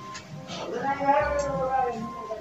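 A cat meowing once: a single long call that rises and then falls in pitch.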